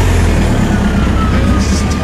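A car engine running with a low, steady rumble.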